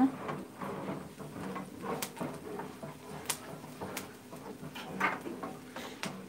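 Wooden spoon stirring diced onion sautéing in oil in a small frying pan, the onion turning translucent: quiet scraping with scattered sharp taps of the spoon against the pan, the clearest about two, three, four and five seconds in.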